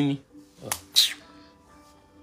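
Two sharp finger snaps about a third of a second apart, over a faint held musical tone.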